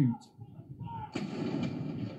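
A ceremonial saluting gun fires a single blank round about a second in, a sudden bang that rolls away over the following second, heard through a television's speaker. It is one round of a gun salute.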